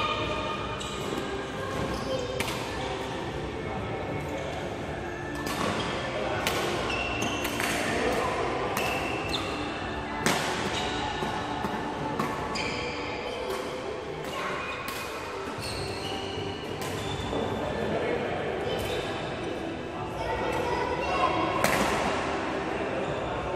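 Badminton rackets striking shuttlecocks in an irregular run of sharp hits, roughly one every second or so, echoing in a large hall.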